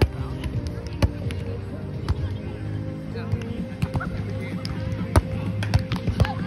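A volleyball being struck by players' hands and forearms during a rally, giving sharp slaps: one near the start, then about a second apart, and two close together near the end.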